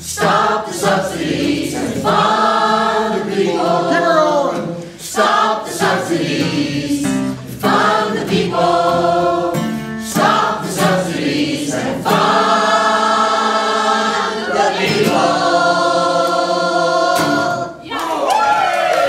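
A mixed choir of older men and women singing together with acoustic guitar accompaniment, closing the song on two long held notes near the end.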